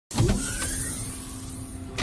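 Intro sound effect for a logo reveal: a sudden rushing whoosh that slowly eases off, with a faint rising tone under it, leading into a sharp hit at the very end.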